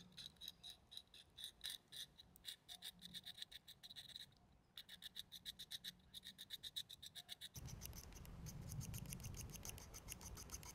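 Victorinox Huntsman Swiss Army knife blade scraping along a small blackthorn thorn, shaving it down into a needle: a fast run of short, fine scratches, pausing briefly about four seconds in. In the last couple of seconds it gives way to a duller, steadier rubbing.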